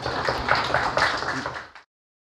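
Audience applauding, then cut off suddenly just before the end.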